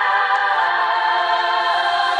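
Layered singing voices holding a sustained, choir-like chord without words.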